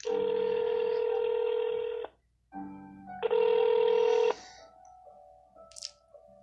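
Telephone ringback tone heard over a phone line while a call is being transferred to another agent: one steady ring of about two seconds, then after a short gap a shorter burst of tone, followed by fainter tones.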